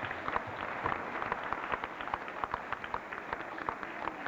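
Audience applauding: many hands clapping, with separate claps standing out.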